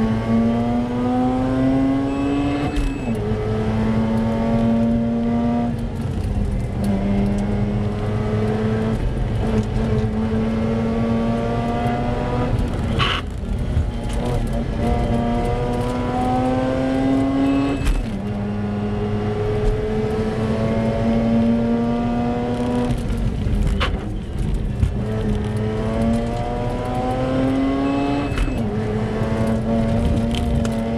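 Competition car's engine heard from inside the car under hard acceleration on a timed run. The revs climb steadily and drop sharply at each gear change, about five times. Two sharp cracks stand out, about halfway through and again later.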